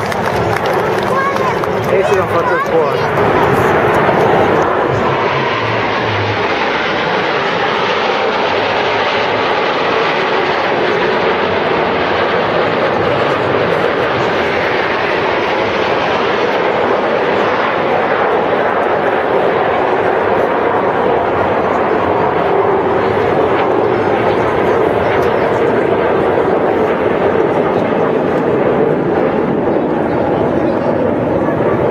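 Steady jet noise from a formation of Aermacchi MB-339 jet trainers flying overhead, with a crowd of spectators talking underneath.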